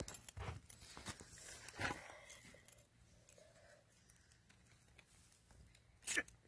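A few short, rasping scrapes of a steel striker along a ferro rod in the first two seconds, throwing sparks at char cloth, then near silence.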